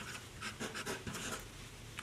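Sailor Pro Gear's 14-carat gold music (MS) nib writing on paper: faint, quick strokes of nib on paper as the letters are traced. The nib glides smoothly, with a velvety feel, rather than scratchy.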